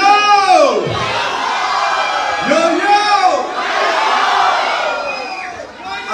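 Concert crowd cheering and shouting loudly, with two long shouts that rise and then fall in pitch, one at the start and one about three seconds in, followed by a steady roar of cheering that dies down near the end.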